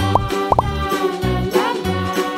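Upbeat children's background music with a bouncing bass line and sustained tones, punctuated by short rising 'bloop' notes, three of them in quick succession.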